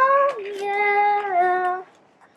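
A girl singing unaccompanied: a short note that slides up, then drops into a long held note that steps down a little before stopping near the end.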